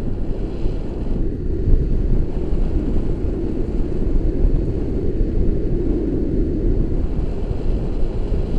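Steady wind rumble buffeting an action camera's microphone in the airflow of a paraglider in flight.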